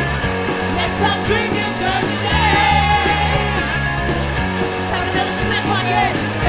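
Studio recording of a punk rock band playing a fast, dense, continuous passage with a full band.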